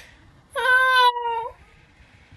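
A single meow-like animal cry, about a second long, holding a nearly steady pitch.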